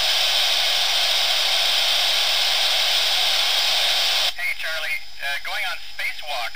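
Amateur FM radio receiver giving loud, even static between downlink transmissions from the International Space Station. The hiss cuts off abruptly about four seconds in as the station's signal returns and a voice comes through.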